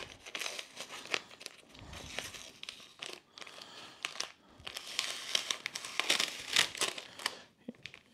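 Blue painter's tape being peeled off an acrylic sheet and crumpled in the hand: an irregular run of crackling, tearing rasps and small clicks.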